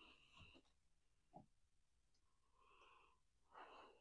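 Near silence with faint breathing; near the end a short, faint sniff as a man smells a freshly poured glass of beer.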